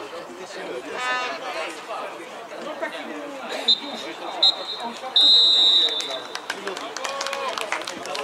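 Referee's whistle blown twice briefly and then once long, the signal for the end of the first half, over distant players' shouts and chatter.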